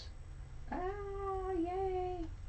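A person's drawn-out "aah", starting about a second in and held at nearly one pitch for about a second and a half.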